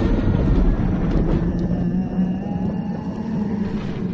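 Dark horror sound-effect drone: a heavy low rumble under a steady hum, with thin tones slowly rising in pitch and a few faint clicks in the first second and a half.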